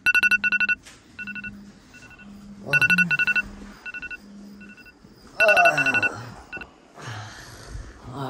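Smartphone alarm beeping in repeated groups of a two-tone electronic beep, loud groups alternating with softer ones, with the phone's vibration buzzing against the bed between the beeps. A short vocal sound comes about five and a half seconds in, and bedding rustles near the end.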